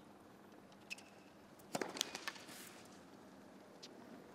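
A tennis serve in a hushed arena: a short click with a brief squeak about a second in, then the sharp crack of racket on ball near the two-second mark, followed within a quarter second by another sharp hit of the ball.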